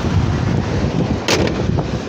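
2013 Ford F-150 engine running at idle just after start-up, heard close in the open engine bay as a loud low rumble, with one sharp click a little past halfway.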